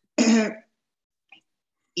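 A woman clears her throat once, a short voiced sound of about half a second.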